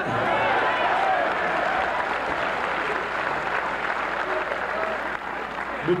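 Audience applauding, with a few voices calling out in the first second or two. The applause eases slightly toward the end.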